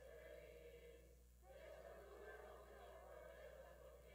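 Faint, muffled group of adult voices singing a song together, with a short break a little over a second in.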